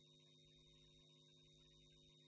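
Near silence with only a faint, steady electrical hum on the audio feed.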